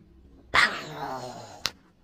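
A drawn-out whine-like vocal sound, starting about half a second in and falling in pitch over about a second, followed by a sharp click.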